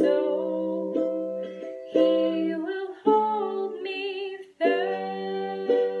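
Slow strummed chords on an acoustic string instrument, about one strum a second, each left to ring. These are the closing bars of a hymn accompaniment.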